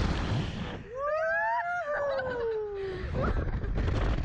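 A rider's long scream on a slingshot ride, climbing in pitch and then sliding down over about two seconds, over wind rushing across the microphone as the capsule flies through the air.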